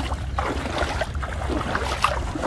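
Legs wading through shallow floodwater, the water swishing and splashing irregularly with each step.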